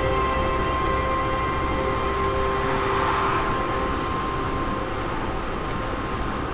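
Steady road and engine noise inside a moving car at speed, with a thin steady whine that fades out about halfway through and a brief swell of noise near the middle.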